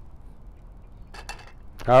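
A golf ball dropping into the cup, a quick rattle of sharp clicks a little over a second in, after a stretch of faint outdoor background. A man's voice starts just before the end.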